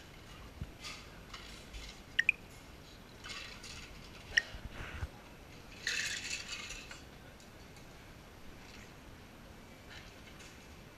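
Cocktail-making clatter at a bar: sharp ringing clinks of glass and metal barware, two close together about two seconds in and another a couple of seconds later, among small knocks. About six seconds in comes a rush of noise lasting about a second.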